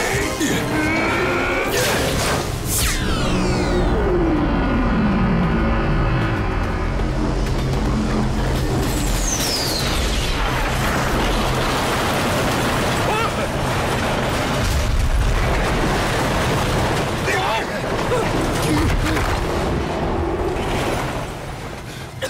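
Cartoon action-scene soundtrack: dramatic background music over the continuous rumble of an armoured train crossing a bridge, with a loud blast about two and a half seconds in and falling whooshes later.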